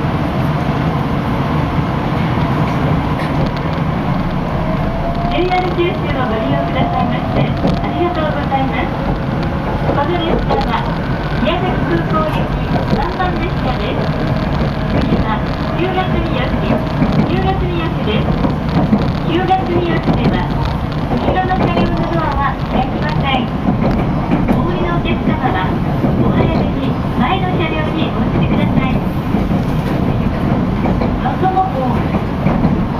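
Steady rumble of a local passenger train running, heard inside the carriage. From about five seconds in, a voice talks over it.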